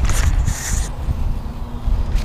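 Low rumble of wind and handling noise on an action camera's microphone, with a short rustle of jacket fabric brushing over the camera about half a second in.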